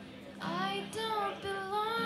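A woman singing live over a strummed acoustic guitar. Her voice comes in about half a second in and glides between held notes.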